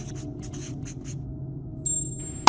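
Felt-tip marker scratching on a whiteboard in a few short writing strokes in the first second, over a steady low drone. A thin high tone starts just before the end.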